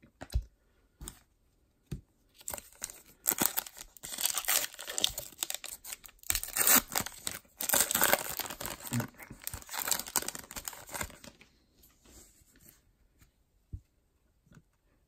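Crinkling and tearing of a foil trading-card pack wrapper together with trading cards handled by hand. It comes in dense runs, loudest in the middle, with a few single clicks at the start and softer rustling near the end.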